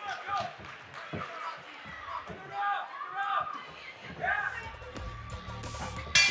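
Live boxing in the ring: scattered thuds of footwork on the canvas and punches, under shouts from the corners and the crowd. A steady low background, likely music, comes in near the end.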